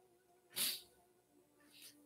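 A man's short, sharp sob-like catch of breath about half a second in, then a soft inhale near the end, from a speaker choked with tears.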